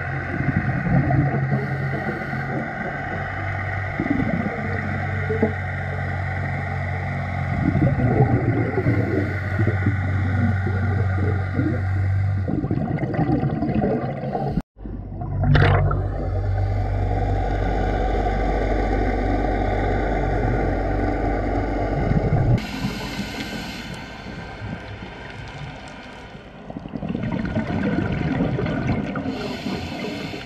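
Underwater sound recorded through a dive camera housing: a scuba diver's exhaled regulator bubbles rushing in irregular bursts over a steady low hum. The sound cuts out briefly about halfway through.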